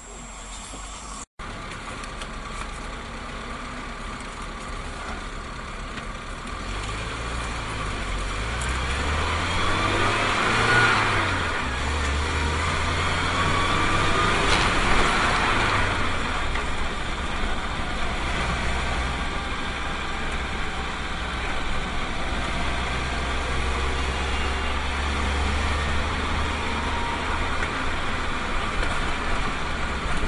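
Minibus engine and road noise heard from inside the cab as the vehicle gets under way and picks up speed, growing louder. The engine note rises and falls several times in the middle, then runs steadily.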